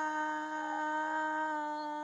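A singer's long held note at one steady pitch, quiet and slowly fading, at the end of a sung phrase.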